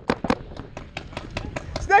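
Paintball markers firing: sharp pops at an irregular pace, several a second, with a shouted callout starting near the end.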